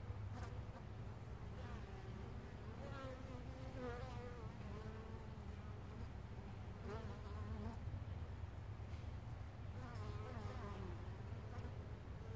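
Carniolan honey bees buzzing as they fly in and out past the hive entrance. There are about five separate passes, each buzz wavering up and down in pitch, over a steady low hum.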